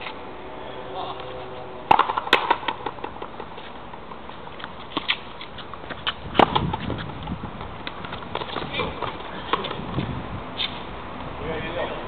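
Frontenis rally: a hard rubber ball struck by rackets and slapping off the fronton wall. There are sharp knocks about two seconds in, the loudest about six seconds in, and fainter knocks scattered after.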